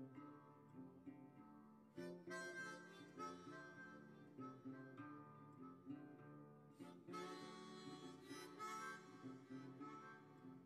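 Faint instrumental background music with a melody of sustained notes; no hammer blows are heard.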